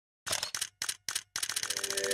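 Camera shutter sound effect: four separate shutter clicks about a third of a second apart, then a fast burst of continuous-shooting clicks that speeds up. The first notes of an intro jingle come in under the burst in the second half.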